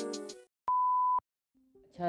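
The tail of electronic intro music dies away, then a single steady electronic beep, one pure tone about half a second long, sounds around the middle.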